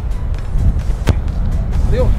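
A volleyball kicked hard by a foot: one sharp thud about a second in, over a steady low rumble.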